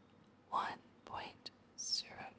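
Whispered speech: a few short, breathy syllables reading out a number.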